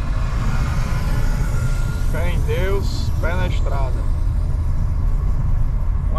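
Steady low rumble of a car driving at road speed, heard from inside the cabin. A voice speaks briefly about two seconds in.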